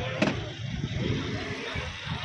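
Low rumble of road traffic with indistinct voices around it, and a single sharp knock about a quarter of a second in.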